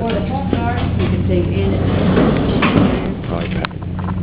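Voices talking over a steady low hum.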